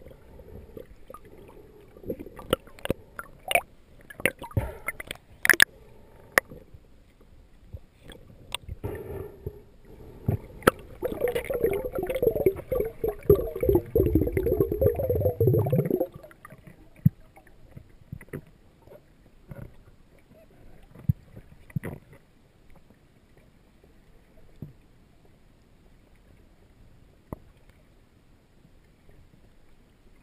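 Underwater sound from a freediver's camera: scattered sharp clicks and knocks, then a few seconds of loud bubbling gurgle about halfway through that stops suddenly, followed by faint ticks.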